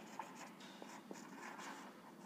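Faint scratching strokes of a marker pen on a whiteboard, writing out a couple of words.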